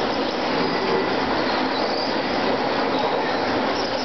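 Electric radio-controlled trucks racing on a dirt track: a steady blend of high motor whine and tyre and drivetrain noise.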